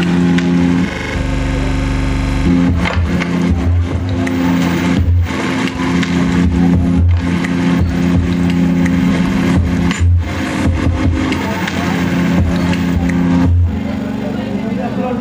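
Live electronic music: held low synth notes over a pulsing bass beat, the notes breaking off and coming back several times.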